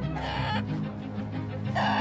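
Hens clucking: two short calls, one just after the start and one near the end, over background music.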